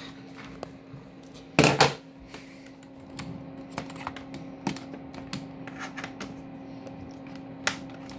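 Scattered clicks, taps and rattles of a USB cable and plug being handled and pushed into a port on the back of an iMac, with one loud short clatter about a second and a half in. A steady low hum runs underneath.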